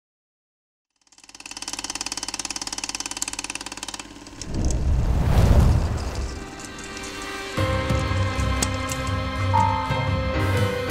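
A second of silence, then a fast, even fluttering rattle for about three seconds. A louder noisy rush swells and fades in the middle, and music with held tones comes in near the end.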